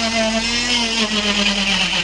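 Electric oscillating cast saw cutting a plaster arm cast: a loud, steady motor whine whose pitch sags slightly in the second half as the blade bears on the plaster.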